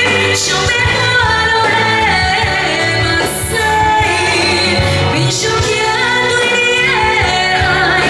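A woman singing a Mandarin pop song live into a handheld microphone, backed by a live band, over a stage sound system.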